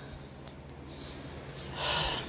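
A woman's breath: a short, noisy exhale near the end, over faint room noise.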